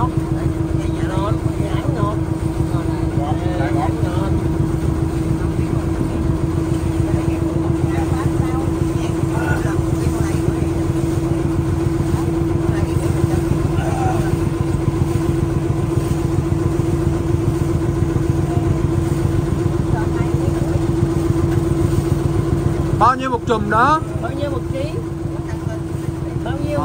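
A small boat engine idling close by: a steady, fast-firing drone with a strong steady hum. About 23 seconds in it drops off sharply and the boat goes quieter.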